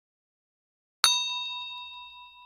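Silence, then about a second in a single bright ding, like a small bell struck once, ringing on and dying away over about two seconds: an intro sound effect for a title card.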